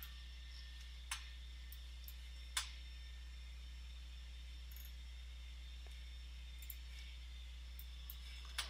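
Two short computer mouse clicks, about a second and two and a half seconds in, with a few fainter ticks later, over a faint steady low hum.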